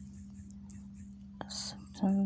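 A steady low hum with a few faint taps from typing on a phone's touchscreen, and a brief whisper near the end.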